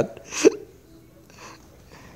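One short, sharp breathy vocal sound about half a second in, like a laugh or a hiccup, then low room sound with a faint brief hiss around the middle.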